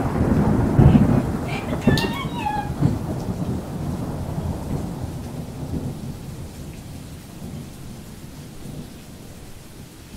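Rolling thunder with rain, loudest at the start and dying away over the following seconds. A brief faint high sliding sound comes about two seconds in.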